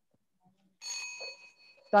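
A single bell ring a little under a second in, its ring fading away over most of a second: the signal that the five seconds for answering are up.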